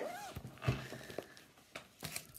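The end of a spoken phrase, then a few soft knocks and handling sounds as stitching projects and thread are put away on a table.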